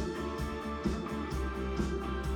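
Live rock band playing electric guitar, keyboards and a drum kit, with a steady beat.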